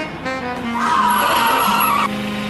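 A car's tyres screeching as it brakes hard to a stop beside the road, starting about a second in and cutting off near the end, over background music.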